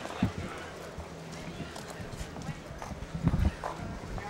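Footfalls and small knocks on pavement from people moving about, under indistinct background chatter, with a cluster of louder knocks about three seconds in.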